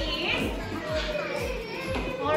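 Young children's voices in a classroom, with background music.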